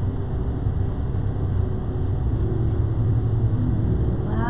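Steady low rumble of background noise with a faint hum, no distinct events.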